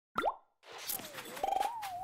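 Animated logo sound effects: a quick rising pop, then after a short gap a sliding whistle-like tone that dips and climbs in pitch, with a brief rattle of rapid clicks midway.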